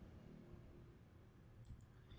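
Near silence: room tone, with a couple of faint clicks from a computer mouse or keyboard near the end.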